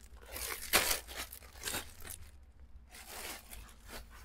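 Plastic-wrapped clothes being handled and rummaged through, making a few short crinkling rustles of plastic bags, with a quieter moment about halfway through.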